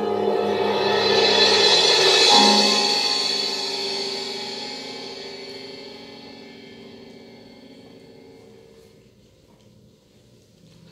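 Live chamber ensemble of piano and bowed strings holding a loud sustained chord while a cymbal swells up, peaking about two and a half seconds in. The sound then dies away slowly over several seconds.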